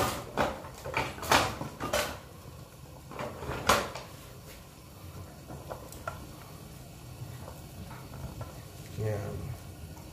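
A wooden spatula knocking sharply against a large aluminium cooking pot, five or so knocks in the first four seconds, then only faint small clicks.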